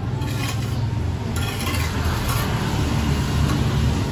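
Steel masonry trowels scraping and spreading wet cement, in a few short rasping strokes, over a steady low rumble.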